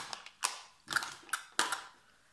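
Makeup items being gathered up and put away, clicking and knocking against each other: about five sharp clicks, roughly one every half second.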